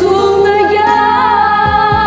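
Women's voices singing long, held notes over a recorded pop-ballad backing track.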